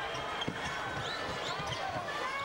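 Basketball game sound on a hardwood court: a ball bouncing in short knocks, a few brief sneaker squeaks, and arena crowd noise underneath.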